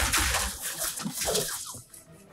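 A volley of musket fire from a film's soundtrack: many overlapping shots blurring into a hissing rush that fades out over about a second and a half.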